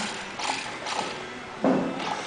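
Plastic gears and motor of a GIGO building-block remote-control gripper arm clicking and rattling as the arm moves, with a louder knock near the end.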